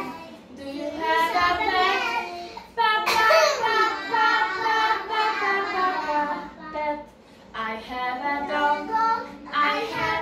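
Young children singing together, with a short break about seven seconds in before the singing picks up again.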